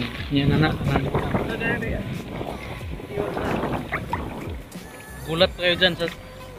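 Seawater sloshing and splashing around a fishing net as it is hauled up, water streaming off the mesh, with men's voices now and then.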